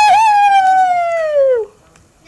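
A young girl's voice holding one long, loud, high note with a slight waver, which slides down in pitch and stops near the end.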